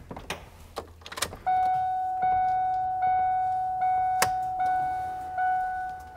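Cab door of a 2000 Ford E-450 ambulance unlatching with a few clicks, then the cab's door-open warning chime ringing: a single bell-like tone struck about every 0.8 s, fading between strikes. A sharp click cuts in about halfway through.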